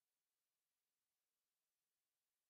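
Near silence: a faint, even digital hiss with no other sound.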